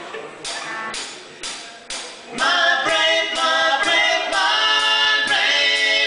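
Live rock band playing: a few sharp beats about two a second, then about two seconds in the band comes in loud with several voices singing in harmony.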